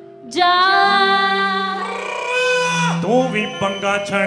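Live Punjabi song with band accompaniment: after a short lull, a singer holds one long, steady note from about half a second in, and a new sung phrase starts with an upward glide near the end.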